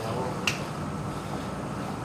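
A single short, sharp click about half a second in, over steady background room noise.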